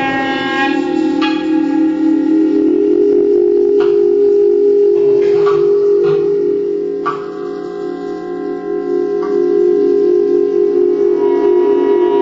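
Clarinet playing long held notes over a steady low tone, the upper pitches changing abruptly several times, a little quieter for a couple of seconds past the middle.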